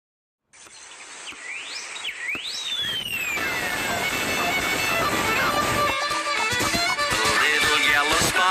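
Cartoon soundtrack: after a moment of silence, two quick rising whistle-like glides and one long falling one, as music swells in and builds to full loudness.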